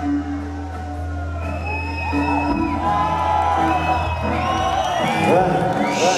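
A rock band's sustained low note drones and fades out a couple of seconds in, while the concert crowd whoops and cheers, growing louder toward the end.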